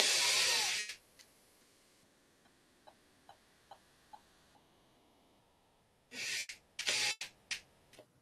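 A woman's deep diaphragmatic breathing, audible on the microphone: a long breath of about a second at the start, then another breath in several short pulses near the end. A few faint ticks fall in between.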